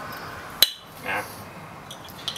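One sharp click about half a second in as pliers squeeze a plastic Duplo brick to break it up; the brick does not give way.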